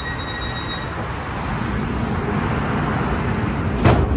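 Steady noise inside a P3010 light-rail car standing at a station in a freeway median: the car's running equipment and the traffic outside, with a faint high whine that fades about a second in. A single sharp knock comes just before the end.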